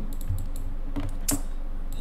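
A handful of separate keystrokes on a computer keyboard, about four clicks with the sharpest a little past the middle, over a faint steady low hum.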